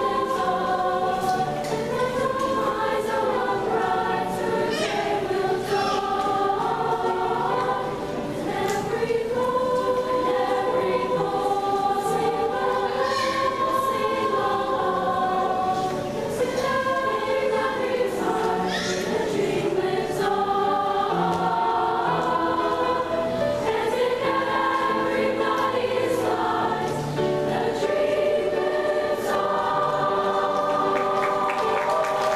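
A girls' chorus singing a song together, many young voices in unison and harmony, with piano accompaniment, continuing steadily.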